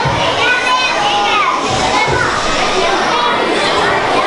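Many children's voices chattering and calling out at once, with no single voice standing out.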